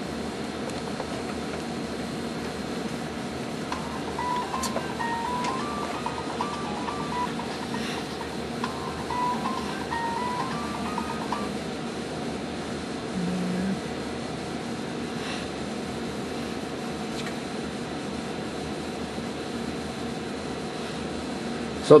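Steady room noise with a faint tune of short stepped notes heard in two phrases in the first half, and a brief low tone just after.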